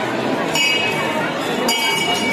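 Hanging brass temple bell struck by hand twice, each strike ringing on with clear high tones, over the chatter of a queueing crowd.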